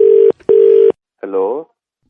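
Telephone ringback tone over a phone line: two short steady beeps in quick succession, the double ring of an outgoing call. The call is picked up about a second in.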